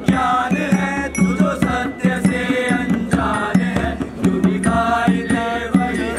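Voices singing a chant-like melody over a steady low drone, with short percussive beats through it.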